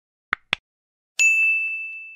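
Subscribe-button sound effect: two quick mouse clicks, then a bright notification-bell ding a little over a second in that rings on one steady high tone and fades away.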